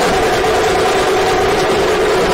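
A procession band of large stick-beaten drums playing a fast, continuous beat, with a steady held note over it that fits the long horns played in the procession.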